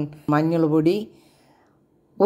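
Speech: a voice talks for about a second, then goes near silent for the rest.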